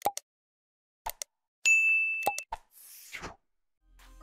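Subscribe-button animation sound effects: a few sharp mouse clicks, then a single high bell ding about a second and a half in, followed by a short whoosh.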